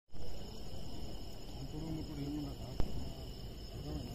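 Steady high-pitched insect chirring, with faint voices talking in the background around the middle and a single sharp click just before three seconds in.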